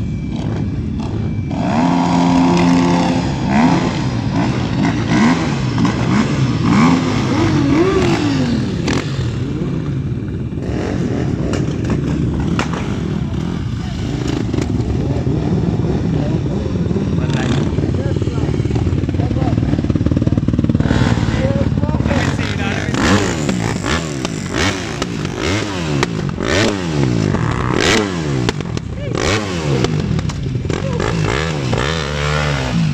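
A group of motorcycles and dirt bikes running together, several engines idling and revving at once so that their notes rise and fall over each other, with the revving busiest in the last third.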